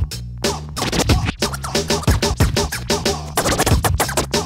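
Instrumental hip hop beat with turntable scratching: quick, dense scratch strokes over drums and a stepping bass line, no rapping.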